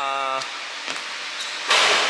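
A man's voice holds a short level hum at the start. Then comes a quiet stretch of gym room sound with a couple of faint knocks, and near the end a short loud rush of hissing noise.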